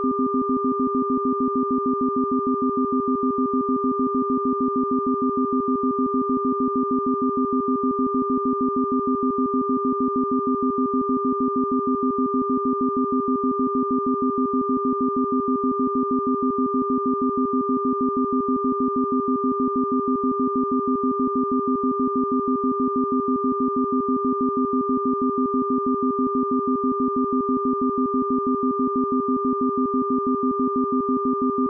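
Synthesized sound-therapy tones: a few steady pure tones, one low and strong and one higher and fainter, held without change and pulsing rapidly and evenly in level, in the manner of isochronic tones or binaural beats.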